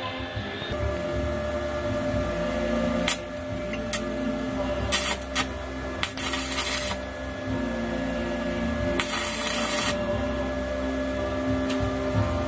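Arc welding with a small portable welder: four bursts of arc crackle, the longest about a second, each as a weld is laid on the steel frame, over a steady hum.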